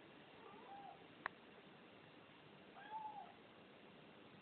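A cat meowing softly twice, short rising-and-falling calls about half a second in and about three seconds in. A single sharp click sounds between them, about a second in.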